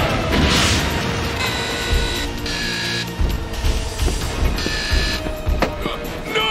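Cartoon sci-fi sound effects over background music: a whoosh early on, then a run of mechanical effects, short held electronic tones broken by low thuds.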